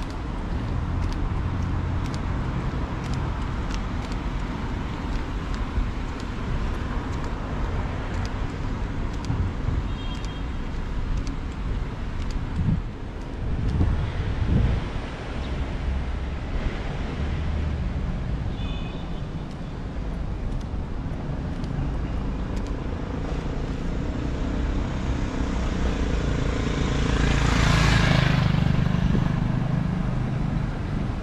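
Road traffic on a wet city street: a steady wash of cars going by, with one vehicle passing close and loudest near the end.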